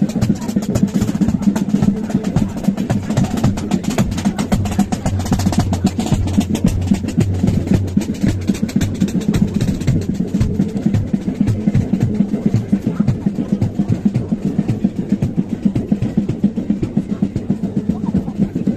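Military marching band playing a march: low brass notes over snare and bass drums. The brass fades after about ten seconds while the drumming carries on.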